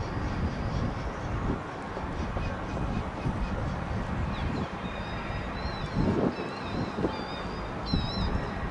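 Steady outdoor rumble with birds calling in high, thin, wavering chirps from about halfway in.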